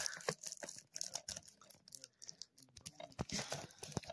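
Cellophane shrink-wrap on a DVD case being picked at and torn off by hand: faint, irregular crackling and small rips.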